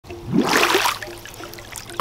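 Splash of pool water as a swimmer surfaces, a loud burst lasting about half a second, followed by quieter water noises as it runs off.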